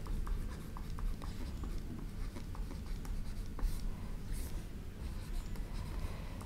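Stylus writing on a tablet: faint scratching strokes and light taps as an equation is handwritten, over a low steady hum.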